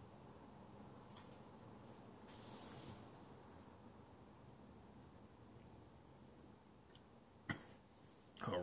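Near silence, then near the end one short, sharp cough as a sip of bourbon goes down the wrong pipe.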